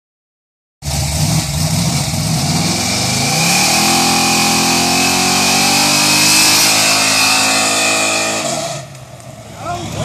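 Chevrolet Nova's engine running, revved up about three seconds in, held at high revs for several seconds, then let fall back near the end. It is now running better, which the owner is pleased with.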